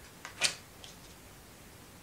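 An oracle card being laid down on a wooden board: one sharp tap about half a second in, with a couple of fainter clicks around it.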